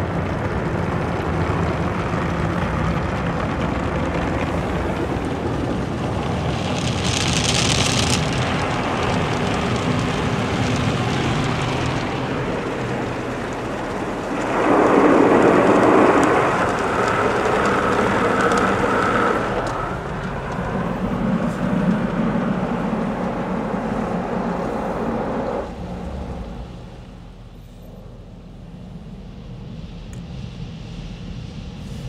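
Automatic soft-touch car wash heard from inside the car: water spraying and soapy cloth strips washing over the body and windows, a continuous rushing. It swells to its loudest about halfway through and falls off some four seconds before the end.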